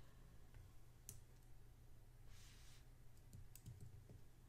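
Near silence with a few faint clicks of computer input while working in drawing software: one about a second in and a small cluster near the end, with a soft hiss midway.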